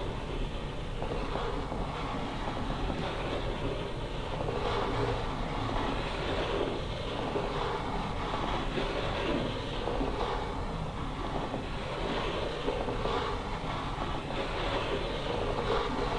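Wooden planchette sliding across a wooden Ouija board, a continuous rubbing scrape whose strength shifts as it moves, over a low steady hum.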